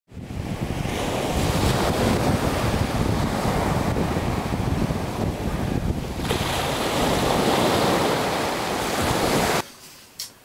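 Sea surf breaking and washing up a sandy beach, a steady rushing wash that swells again about six seconds in and cuts off suddenly near the end.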